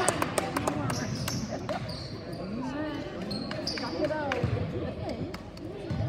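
A basketball bouncing and sneaker footfalls on a hardwood gym floor, with short high squeaks and sharp knocks that come thickest in the first second. Indistinct voices of players and spectators echo in the gym.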